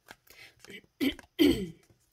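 A woman clearing her throat twice, about a second in, over the soft riffling of a tarot deck being shuffled by hand.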